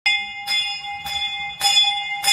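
A hanging temple bell (ghanta) rung by hand: four strikes about half a second apart, each leaving a steady, bright ring that carries into the next.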